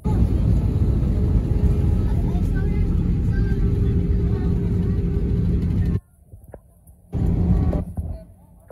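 Jet airliner cabin noise as the plane rolls along the runway after landing: a loud steady rumble with a steady hum. It cuts off suddenly about six seconds in, and the same noise comes back briefly near the end.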